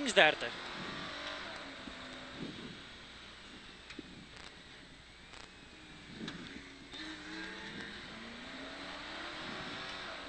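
Mercedes 500SLC rally car's 5.0-litre V8 heard from inside the cabin, revving up and down as it accelerates and lifts off, its pitch rising and falling several times. A few short clicks come near the middle.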